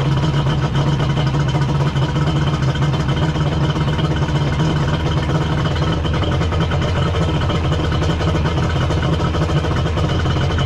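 Kawasaki 1100 three-cylinder two-stroke jet ski engine idling steadily while its carburettor low-speed mixture screws are being adjusted. The owner takes its low-speed behaviour as running way too rich.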